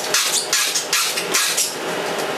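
A quick run of short knocks and rustles, several a second, over a steady hiss, sped up to double speed.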